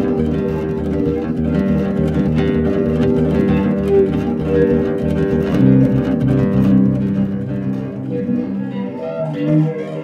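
Instrumental acoustic guitar music: picked notes and chords over a regular low bass pulse, with the low part dropping away near the end.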